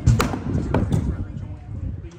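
An axe knocking into a standing wooden block during an underhand chop: one sharp knock just after the start, then a lighter knock under a second in.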